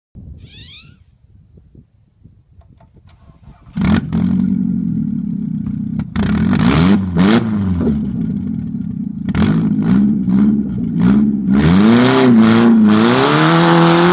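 Toyota Corolla's engine being driven hard, revving up and dropping back again and again, with sharp knocks and rattles from the car. It comes in suddenly about four seconds in, after a few quieter seconds.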